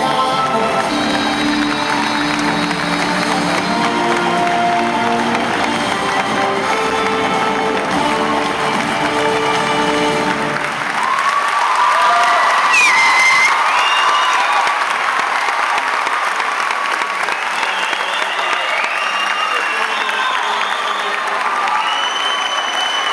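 Stage show music with long held notes ends about halfway through. A theatre audience then breaks into applause and cheering that carries on to the end.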